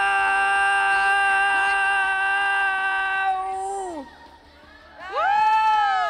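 A child's voice holding one long, steady "miau" into a microphone, kept up as long as the breath lasts in a contest for the longest meow. It drops in pitch and breaks off about four seconds in. About a second later a shorter "miau" rises and falls in pitch.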